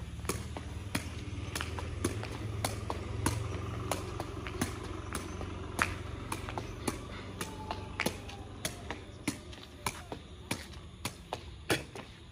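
Sepak takraw ball kicked again and again as it is juggled off the foot: a sharp tap every half second or so, over a steady low rumble.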